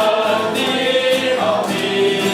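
A small group of voices singing a worship song together, accompanied by strummed acoustic guitars.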